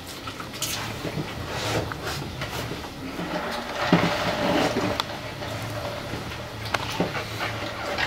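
People chewing and munching mouthfuls of taco, with irregular small clicks and rustles, over a steady low hum in the room.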